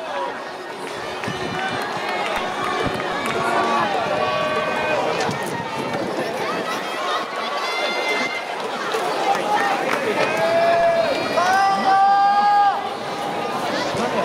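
Several people shouting and calling out across a ballpark, their voices overlapping, with two drawn-out calls about ten and twelve seconds in.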